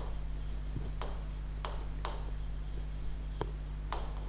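A pen writing on the screen of an interactive display board, with several sharp taps as the pen strokes land, over a steady low electrical hum.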